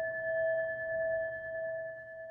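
A struck bell ringing on after the strike, a clear ring of a few steady tones slowly fading.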